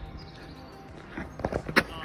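Faint outdoor street background, then a few short sharp knocks in the second half.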